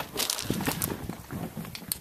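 Footsteps on gravel, irregular and uneven, as someone walks up to a flat tyre.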